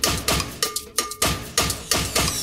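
Percussion-only intro of a tribal house track: a steady pattern of sharp, pitched hand-percussion hits, about four a second, with no kick drum or bass yet.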